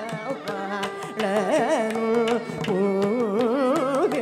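Carnatic classical concert music: a male voice singing with quick oscillating pitch ornaments (gamakas), shadowed by violin, with regular mridangam strokes underneath.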